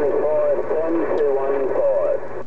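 A man's voice received over a Uniden HR2510 radio tuned to 27.085 MHz, coming through its speaker narrow and muffled over steady static and a low hum.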